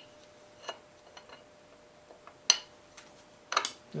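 A few scattered metal clicks and clinks from a wrench working a one-inch nut loose on a two-barrel carburetor, the sharpest about two and a half seconds in and a quick cluster near the end. The nut turns easily: it was not tight at all.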